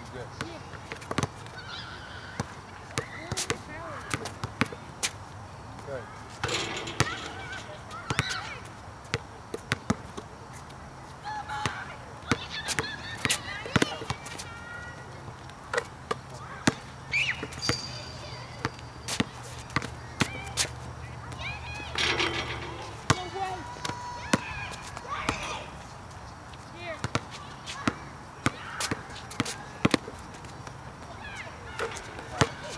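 A basketball bouncing and being dribbled on an outdoor asphalt court, with sharp, irregular bounces and the thud of shots throughout. Short calls or shouts sound now and then in the background, and a low steady hum runs through the middle stretch.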